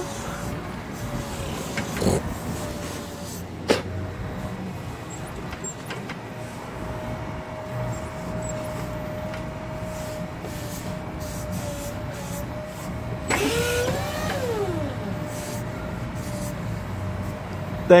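Forklift being driven and steered: a steady low rumble with a steady whine above it. Two sharp knocks come in the first four seconds.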